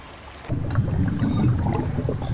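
Low, muffled rush of water that starts suddenly about half a second in, matching the view dipping below the water surface.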